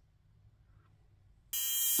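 Near silence, then about a second and a half in a high-frequency skincare wand with a neon-filled glass electrode switches on, giving a sudden steady electrical buzz that is strongest in the high pitches.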